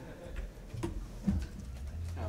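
Low background room noise with a few soft knocks or clicks; the loudest comes a little past halfway.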